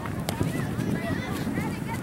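Indistinct shouting and calling voices across a soccer field, over a steady low outdoor rumble, with a sharp tap about a third of a second in.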